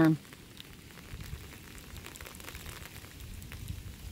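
Faint, steady hiss with light crackling and a low rumble, after the last syllable of a spoken word at the very start.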